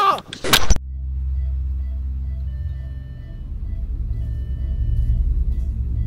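A voice and a sharp loud burst cut off abruptly within the first second, giving way to a low, steady rumbling drone with faint sustained high notes above it, which grows louder after about four seconds: an eerie ambient drone.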